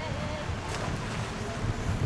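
Wind buffeting the microphone, a constant low rumble, with a faint distant voice calling near the start.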